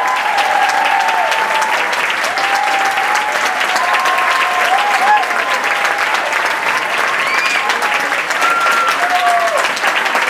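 A theatre audience applauding steadily, with scattered voices whooping and cheering over the clapping at the close of the ballet.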